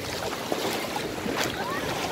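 Steady beach ambience at the edge of a calm, shallow sea: a hiss of wind and small waves lapping, with faint distant voices of bathers.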